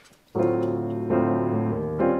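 Grand piano coming in about a third of a second in with a jazz chord, moving to new chords about a second in and again near the end.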